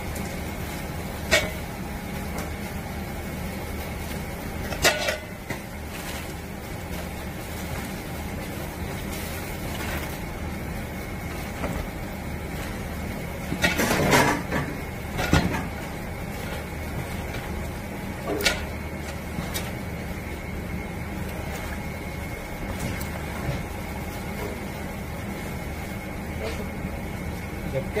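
Gloved hands tossing seasoned spinach in a large stainless steel bowl, giving a few sharp knocks against the bowl, loudest in a short clatter around the middle. A steady background hum runs underneath.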